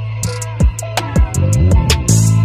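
Hip hop instrumental beat: steady hi-hats and deep kicks that drop in pitch over a held low bass note, with the bass breaking into a busier run in the second half.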